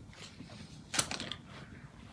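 Light handling clicks and rustling from scissors and a new slipper's packaging, with one sharper click about a second in.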